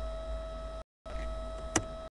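Steady electrical hum and whine from a webcam recording, cut out twice by brief dropouts to dead silence, with one sharp click near the end.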